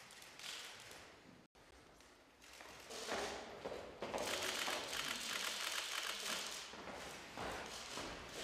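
Room sounds of two people meeting: footsteps, clothing rustle and a dense run of quick clicks and taps, busiest during the handshake. The sound cuts out completely for a moment about a second and a half in.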